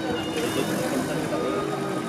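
Citroën Traction Avant's engine running as the car rolls slowly, mixed with people talking around it.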